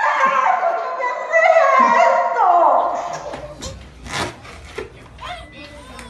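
A woman crying out with emotion: high, wavering wails whose pitch slides downward, two long cries over the first three seconds. They stop, and a low hum with a few sharp knocks follows.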